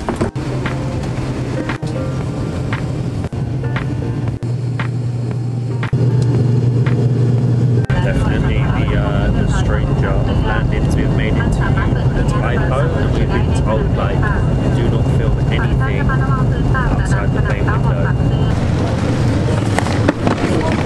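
Steady low drone of a propeller airliner's engines heard inside the cabin, getting louder about six seconds in and again about two seconds later, with muffled voices over it. The drone stops shortly before the end.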